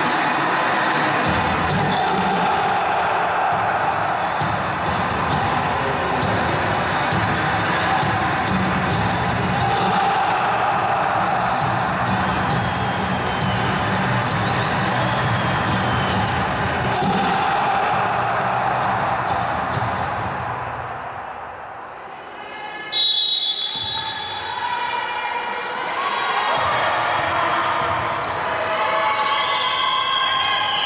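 Music over an arena's public-address system for the first twenty seconds or so, fading out. About 23 seconds in comes a sudden loud, high-pitched sound, and then a basketball is dribbled on a hardwood court, with players' voices echoing in the large hall.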